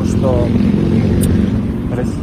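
Motorcycles rumbling past on a street, recorded on a phone voice memo, with a man's voice briefly over the engine noise near the start.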